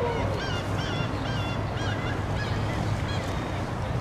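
A bird calling in a quick series of short, pitched calls that stop about three seconds in, over a steady outdoor background rumble.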